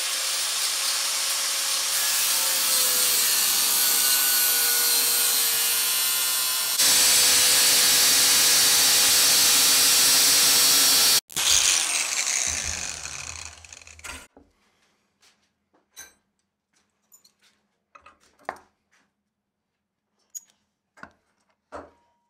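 Corded angle grinder with a cut-off wheel slicing through a steel engine-stand mounting bracket, a loud steady grinding that gets louder about seven seconds in. It stops abruptly, the grinder winds down with a falling whine over a few seconds, and then come light clicks and knocks of the cut metal being handled in a vise.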